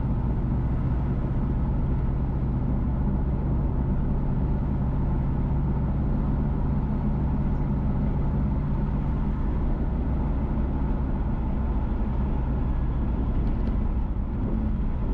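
Steady low drone of a car driving along a road: engine hum and tyre noise, unchanging throughout.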